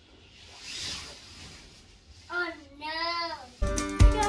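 A young child's high, drawn-out sing-song voice, which bends up and down for about a second. Then music starts abruptly near the end.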